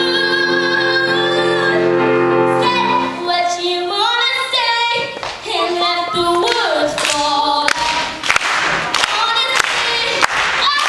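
A girl singing a solo through a microphone with piano accompaniment. She holds a long note over held chords for about the first three seconds, then moves through a changing melody. In the last few seconds, sharp clicks and short noisy bursts cut across the song.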